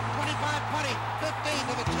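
Excited play-by-play commentary from a sportscaster calling off the yard lines of a long run, over a background music bed of sustained low chords that changes chord near the end.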